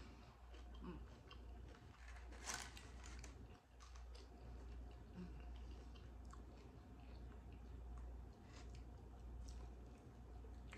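Faint chewing and mouth sounds of someone eating chicken wings, with scattered soft clicks and one sharper click about two and a half seconds in, over a low steady hum.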